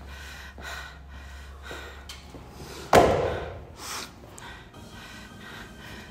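A single loud bang about halfway through, echoing on for about a second in a large gym hall. A low steady hum runs until just before it.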